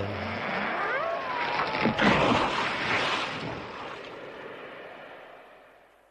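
Sound effect of a tree falling. A creak slides down in pitch, then a crash comes about two seconds in and dies away slowly over the next few seconds.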